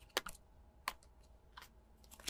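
A few faint, sharp clicks, about three spread over two seconds, from hands picking up and handling small packing items such as printed cards.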